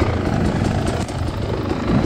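Enduro dirt bike engine running steadily at low speed, with no revving up or down.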